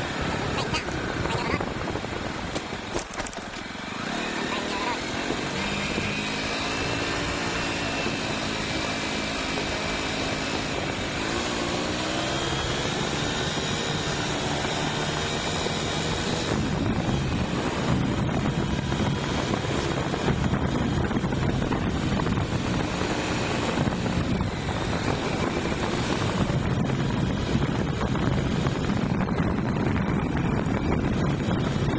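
Motorcycle engine running while riding, its pitch climbing from about four to twelve seconds in as it picks up speed. It then holds a steady cruise, with more rushing noise in the second half.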